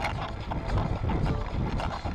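Wind buffeting a bicycle-mounted camera's microphone while riding, a steady low rumble with scattered small clicks and rattles from the bike over the road.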